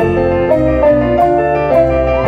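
Live band playing an instrumental passage: electric guitar, bass guitar and drum kit, with a melody line of stepping held notes over the bass.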